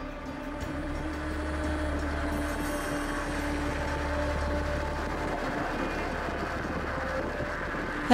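Steady road noise and engine drone of a moving vehicle, heard from inside it, with a low rumble throughout and a steady hum that fades out about six seconds in.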